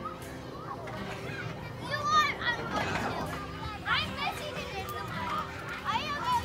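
Young children playing, their high voices calling out and babbling in short bursts, starting about a second in and loudest around two and four seconds.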